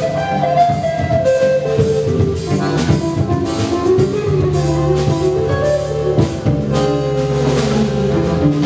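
Live instrumental band playing: accordion and electric guitar carrying sustained melody lines over electric bass, with a drum kit keeping a steady beat of cymbal and drum strikes.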